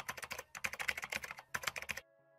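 Computer keyboard typing sound effect: rapid, dense key clicks with a short break about one and a half seconds in.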